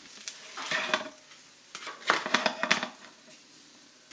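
Toasted croque-monsieur sandwiches being picked up off a ridged nonstick contact-grill plate: light scraping and small clicks of bread and fingers on the hot plate, in two short bouts about a second and two seconds in.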